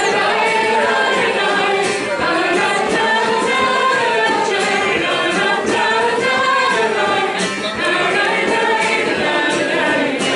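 A group of voices singing a melody together, unaccompanied.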